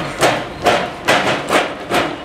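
Regular knocks, about two a second at a walking pace, from footsteps and a hand-pushed flatbed cart rolling over a hard store floor.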